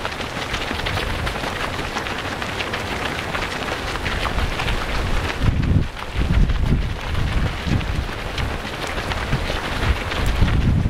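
Footfalls of many runners on a dirt-and-gravel trail, a dense continuous scuffing and crunching as a big pack passes close by. From about halfway through, wind buffets the microphone in low gusts.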